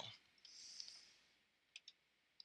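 Near silence: room tone, with a faint hiss about half a second in and a few soft clicks near the end as the presentation is clicked on to the next slide.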